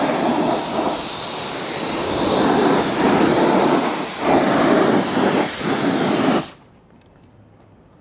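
Coin-operated self-service car wash pressure lance spraying a high-pressure jet of water onto a small SUV's wheel and underbody, a loud hiss that swells and dips as the jet moves. It cuts off suddenly about six and a half seconds in, the paid wash time having run out.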